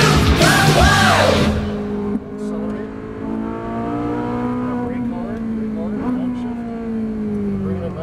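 Rock music with a shouted vocal cuts off about a second and a half in. The Ferrari 458 Italia's 4.5-litre V8 is then heard from inside the cabin at moderate, steady revs, its pitch rising a little and then falling slowly toward the end as the revs drop.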